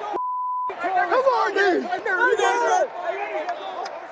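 A censor bleep: one steady high beep about half a second long at the start, with the original audio muted beneath it to cover a swear word. Men's excited voices follow at once.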